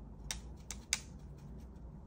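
A paintbrush clicking against a watercolour palette as it is worked in the paint pans: three small sharp clicks within the first second, over a low steady hum.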